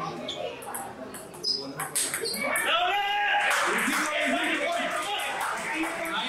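Table tennis ball clicking off bats and table in a quick rally for about two seconds, then spectators shouting and clapping as the point ends.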